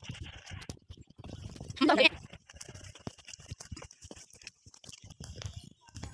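Footsteps crunching along a gravel and dirt path at walking pace, an uneven run of short knocks, with a brief voice about two seconds in.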